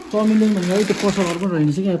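A woman's voice talking in drawn-out phrases, with a rustling, scraping noise under it for about the first second and a half.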